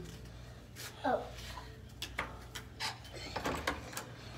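Quiet room tone with a handful of light, scattered clicks and knocks, and a short spoken "oh" about a second in.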